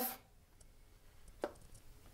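Near silence with one short, light click about a second and a half in, from a cased iPhone being handled against a magnetic wireless charging pad.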